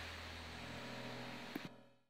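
Low electrical hum and faint hiss of the recording's background noise; the hum stops a little under a second in, two faint clicks come near the end, and the sound then fades out.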